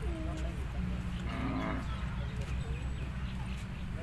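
A single short low from cattle, about a second in, lasting about half a second, over a steady low rumble.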